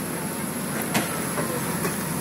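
Steady low rumbling background noise, with a single short knock about a second in.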